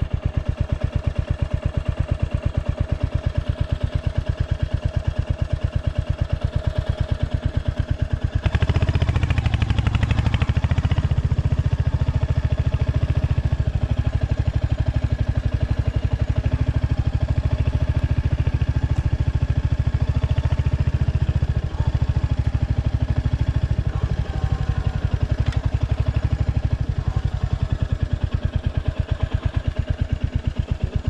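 Royal Enfield Hunter 350's single-cylinder engine running at low trail speed with an even pulse, getting louder as the throttle opens about eight seconds in and holding there, with one brief drop about two-thirds through.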